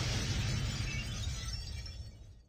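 Explosion sound effect: a deep rumble with crackling, hissing debris noise, fading away over the two seconds.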